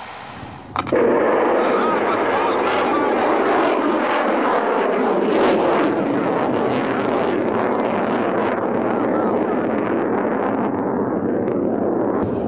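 OTR-21 Tochka (SS-21 Scarab) solid-fuel tactical ballistic missile launching: a sharp crack as the motor ignites just under a second in, then a loud, steady rushing noise for about ten seconds that grows duller near the end.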